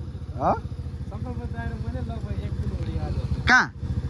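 Small motorbike or scooter engine running steadily at low revs, a low even pulse. A man's voice calls out briefly twice over it, about half a second in and again near the end.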